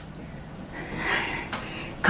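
A person's breathy exhale swelling about a second in while pedalling an exercise bike, with a faint click just after and a low faint background hum.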